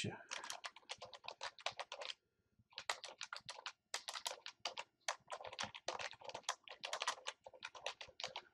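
Typing on a computer keyboard, a quick run of key clicks that stops briefly about two seconds in, then carries on.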